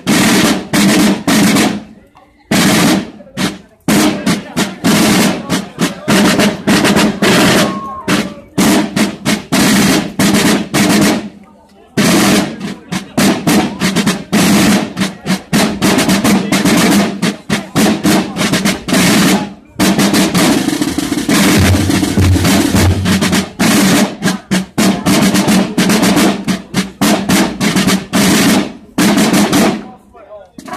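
A corps of parade field drums, snare-type side drums, playing marching beats and rolls in dense runs of strokes, with short breaks between passages.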